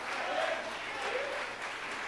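Congregation applauding, with a few faint voices calling out underneath.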